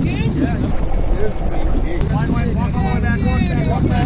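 Excited, high-pitched shouting voices over the steady low rumble of a fishing boat's engine.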